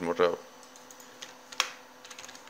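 Computer keyboard clicks: a few scattered key presses, the sharpest about one and a half seconds in, after a brief spoken word at the very start.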